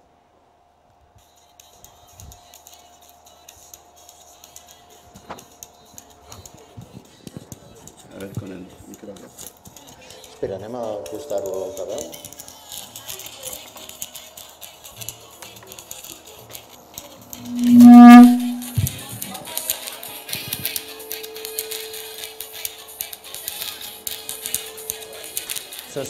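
Music played through a plasma-arc speaker: a 12,000-volt spark modulated by a phone's audio, heard faintly along with a high hiss from the arc. About two-thirds of the way in, a loud buzz lasts about a second.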